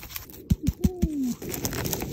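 Four quick taps on a mushroom, then the single falling coo of a pigeon-family bird, then a rustling crunch.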